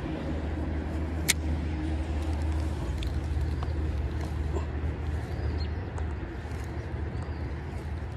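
Spinning rod and reel being cast and retrieved over a steady low rumble: a single sharp click about a second in as the bail snaps shut, then faint ticks as the reel is cranked.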